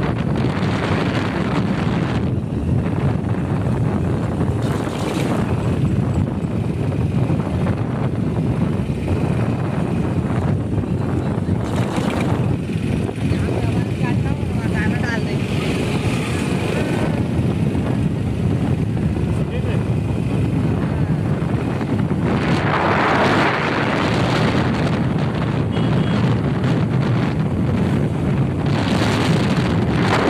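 Wind rushing over the microphone of a camera riding on a moving vehicle, over the vehicle's running and road noise. It is loud and steady, with a louder rush about three quarters of the way through.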